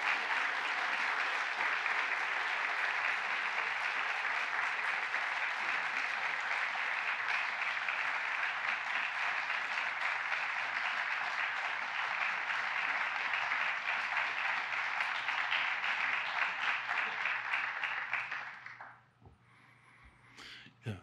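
An audience applauding steadily, a dense sustained round of clapping that dies away a little over a second before the end.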